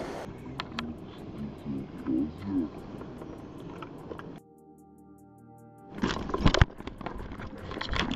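A trout thrashing free from the angler's hands and splashing back into the river, loud sudden splashes starting about six seconds in, after a stretch of river water moving around the wading angler.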